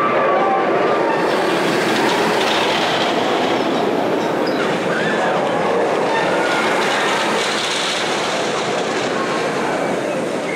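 Steady rumble and rattle of a ride train running on its track, wheels on rails.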